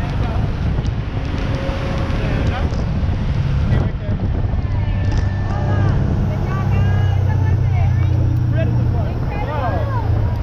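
Parasail tow boat's engine running steadily under way with a deep hum, wind buffeting the microphone and people's voices over it; a single knock a little under four seconds in.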